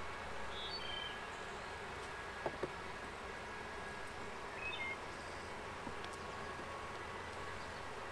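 Steady buzzing of a mass of honeybees, Saskatraz bees, flying around an open hive just after being moved into new boxes, with a few short faint high chirps.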